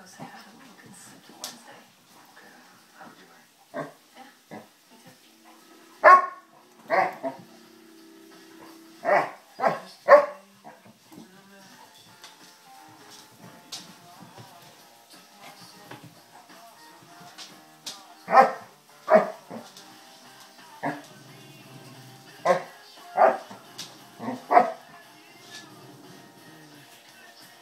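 Basset hounds barking in play: short, loud barks in two runs, one from about six to ten seconds in and another from about eighteen seconds on. Faint music runs underneath.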